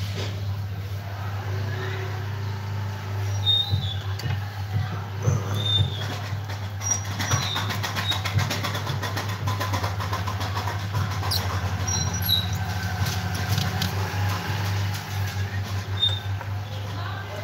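A running engine's rapid, even rattle over a steady low hum, with scattered clicks and a few short high chirps.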